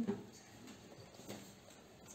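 Quiet room tone with faint, scattered small noises, after a brief murmured "mm" right at the start.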